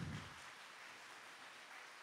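Near silence: faint steady room hiss, with a brief low sound at the very start.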